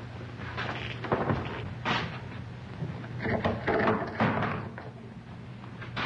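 Scattered knocks and rustles, several short sounds with a denser run a few seconds in, over a steady low hum from an old film soundtrack.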